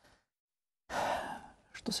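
A man's audible sigh: one breathy exhalation of about half a second, starting about a second in, after which he begins speaking again near the end.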